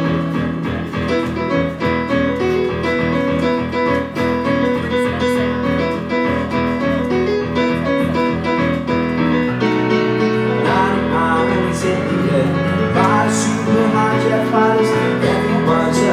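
A piano played live, with steadily repeated chords for the first half; the accompaniment changes about halfway through and a singing voice comes in over it.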